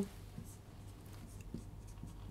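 Marker pen drawing a few short strokes on a whiteboard, faint.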